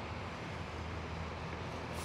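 A steady low hum over a faint, even background noise, with no distinct events.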